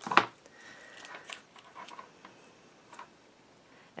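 Paper and cardstock being handled on a wooden tabletop: a short knock right at the start, then faint rustling and a few light taps as a paper strip is pressed down along the edge of an album page.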